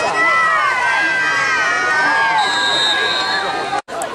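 Sideline spectators shouting and cheering, many voices overlapping with long drawn-out yells, and a shrill whistle, likely the referee's, held for about a second past the middle. The sound drops out for an instant just before the end.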